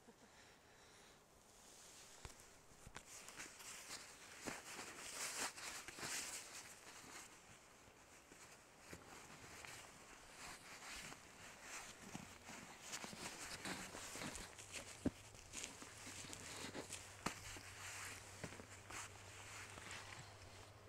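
Quiet, scattered crunches and rustles of footsteps on snow and gear being handled, with no engine running.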